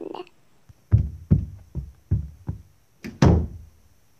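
Heavy knocking on a door: five dull thuds about every 0.4 seconds starting about a second in, then one louder, sharper bang.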